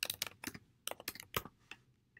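Computer keyboard typing: a quick run of keystrokes as a word is typed, the clicks ending shortly before the end.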